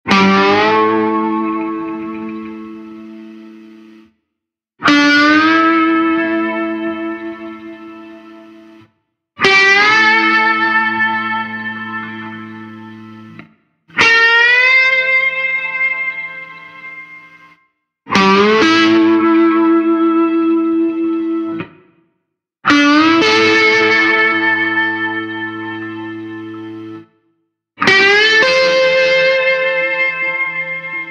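Solo slide guitar playing seven chords. Each is struck with the slide gliding up into pitch, then left to ring and fade for about four seconds, with a short silence before the next.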